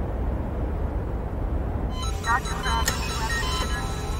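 Cinematic background score: a steady low drone, with high sustained tones and short sliding notes coming in about halfway through.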